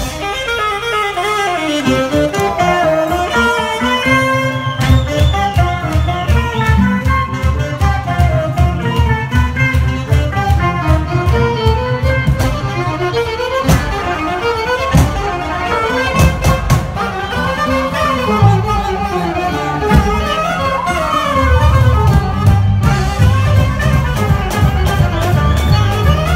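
Live Balkan-style band music: violin and saxophone playing a fast, ornamented melody over double bass, electric guitar and drums keeping a steady beat. The low bass line drops out for the first few seconds and comes back in about five seconds in.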